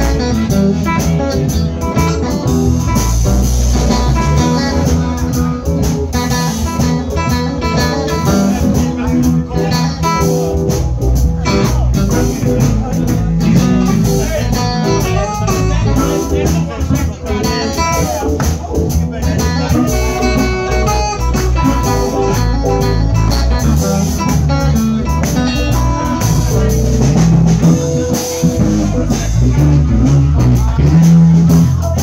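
Live blues band playing: electric guitars and bass over drums, with a harmonica in the mix.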